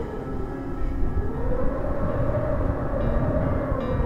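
Low, dense drone of a dark horror film score, with a tone that slowly swells up and sinks back down.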